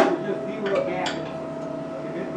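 A hammer striking the steel wing-box structure once at the start, a sharp metallic hit that rings briefly, followed by quieter metal clinks, while bolt holes between wing box and fuselage are being knocked into line. A steady high hum runs underneath.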